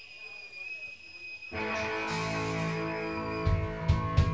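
A heavy metal band starting a song live. A steady high whine sounds from the start. About a second and a half in, the electric guitars and bass strike a held, ringing chord, and the drums come in with a steady beat just before the end.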